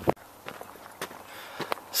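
Footsteps of a hiker walking on a dirt trail: a few steps about half a second apart.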